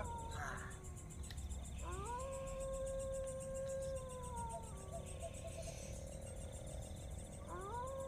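A faint, drawn-out wailing tone that slides up, holds steady for about three seconds, then drops away; a second one begins to rise near the end.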